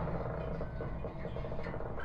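A quiet, steady low rumbling drone with a rough, buzzing texture.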